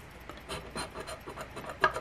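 A scratcher coin scraping the coating off a paper scratch-off lottery ticket. It is a quick, uneven run of short rasping strokes that starts about half a second in.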